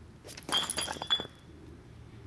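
A brick dropped onto a concrete sidewalk hits about half a second in, followed by a quick run of sharp clinks and rattles with a brief high ring as it knocks about and small chips scatter, all over within about a second. It only chips rather than breaking.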